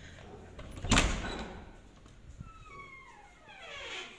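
A wooden door being moved by hand: a thud about a second in, then a squeak that falls steadily in pitch near the end.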